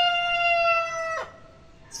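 A rooster crowing: one long, held final note that sags slightly in pitch and ends about a second in.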